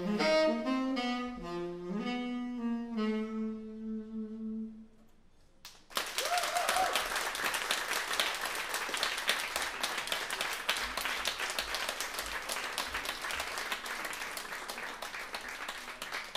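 Saxophone plays a final descending phrase ending on a held low note that fades out about five seconds in, closing the tune. After a second of silence the audience applauds, the clapping slowly dying down.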